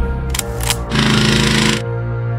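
Trailer music playing throughout. A few sharp shots come about a third of the way in, then a loud burst of rapid automatic gunfire lasts nearly a second near the middle.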